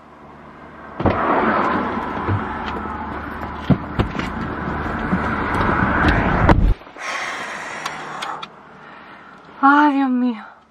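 Car door opened about a second in, letting in steady outside noise with a few clicks and knocks as someone climbs into the driver's seat; the door shuts near the end with a knock that cuts the outside noise off suddenly, leaving a faint hiss inside the closed cabin.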